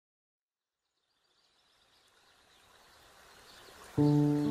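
Silence between tracks, then about a second in a faint ambient nature recording fades in slowly: a soft hiss with light bird chirps, the atmospheric intro layer of a lo-fi beat.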